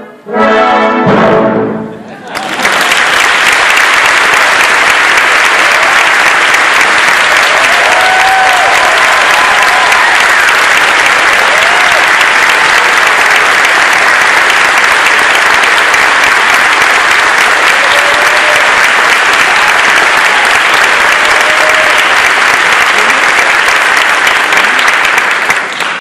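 A concert band's closing chord, with brass and low reeds, cut off about two seconds in, followed by loud, steady audience applause.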